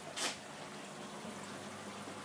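Steady low hum of aquarium pumps with water running and trickling through the linked tanks and sump, and a brief hiss just after the start.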